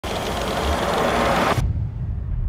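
Banknote counting machine whirring as it riffles through a stack of bills. The dense rattle cuts off suddenly about one and a half seconds in, leaving a low rumble.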